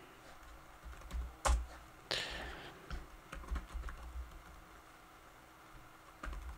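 Quiet, irregular keystrokes on a computer keyboard as a line of code is typed.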